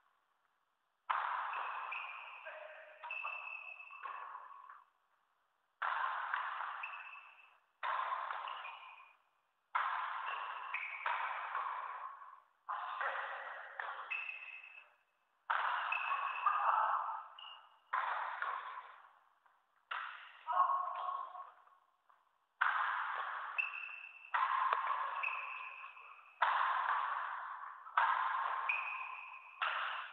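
Badminton shots repeated in a rally: a sharp hit about every two seconds, each trailing off in the hall's echo, with short silences between.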